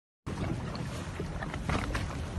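Steady low rumble of wind buffeting the microphone aboard a small boat at sea, with water noise around the hull; it cuts in about a quarter second in.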